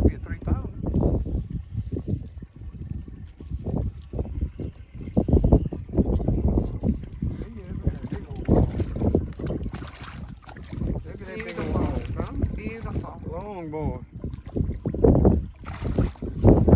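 Strong wind buffeting the microphone, a rough low rumble that rises and falls in gusts, with a voice heard briefly past the middle.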